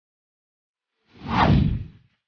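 A whoosh sound effect for an animated title-graphic transition, starting about a second in and lasting under a second, sweeping down in pitch over a deep low end.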